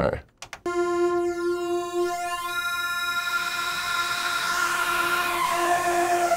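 Arturia MiniFreak synthesizer sounding its Noise Engineering Saw X oscillator engine, a super crusty saw sound. One sawtooth note is held from about half a second in, with a sweeping, shimmering phasing in its upper tones, and it grows grittier and noisier about halfway through.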